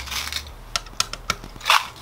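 Hand screwdriver driving screws into a plastic radio mounting bracket: a few short clicks and scrapes of the screw and plastic parts being handled.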